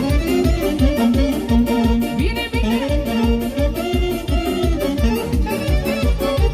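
Live band dance music with a steady, fast beat under a melody line.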